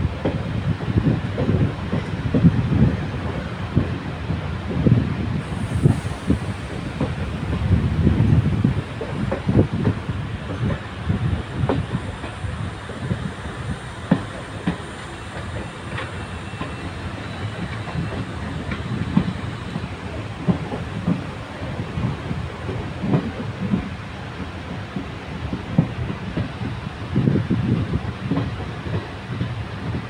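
Indian Railways passenger train running, heard from an open window of a moving coach: wheels clattering on the track in irregular low knocks over a steady rush of track and air noise. The clatter comes in heavier spells near the start, about eight seconds in, and again near the end.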